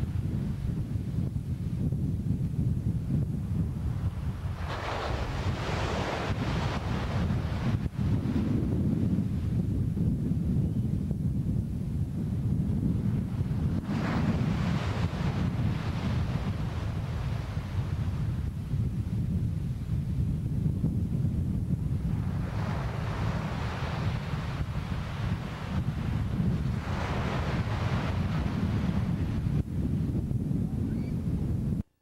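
Surf breaking on a sandy beach: four waves wash in, each a hiss lasting a few seconds, over a steady low rumble of wind on the microphone.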